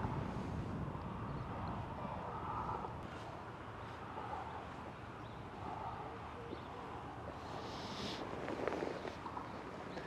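Steady riverbank ambience: a low rumble of noise, like wind on the microphone, with faint indistinct sounds over it and nothing loud.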